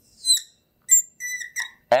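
Marker squeaking on a glass lightboard as lines are drawn: a short high squeak near the start, then a run of several more about a second in.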